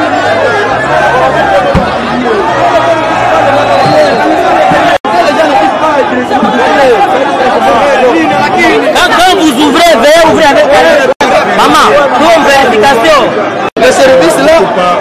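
A crowd of people talking loudly all at once, many voices overlapping in excited chatter. The sound drops out for an instant three times.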